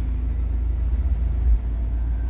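Steady low rumble of the Ram Power Wagon's 6.4-litre Hemi V8 idling, heard from inside the cab.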